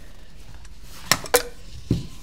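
Plastic collapsible stock being slid off the paintball marker's buffer tube: two sharp clicks a quarter-second apart a little after a second in, then a duller knock near the end as it comes free.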